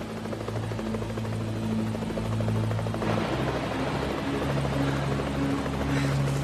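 Helicopter rotor noise, steady at first and growing louder about halfway through, over low held music notes that change pitch in steps.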